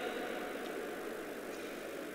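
Steady background room noise of a hall: an even hiss with no distinct events, in a gap between a speaker's phrases at the microphone.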